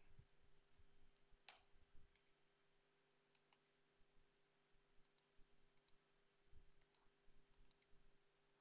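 Near silence broken by a few faint computer mouse clicks, several coming in quick pairs.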